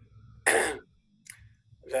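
A person clearing their throat once, a short loud rasp about half a second in.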